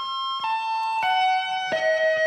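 Electric guitar played slowly in a tapped arpeggio sequence: four sustained single notes, each lower than the last, each left to ring into the next.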